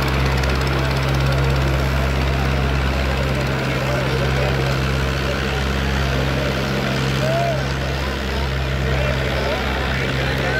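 Two diesel tractors, a Swaraj 855 and a New Holland 3630, hitched back-to-back and running flat out under full load in a tug-of-war, making a steady, unchanging low engine drone. Voices from the crowd are heard faintly over it.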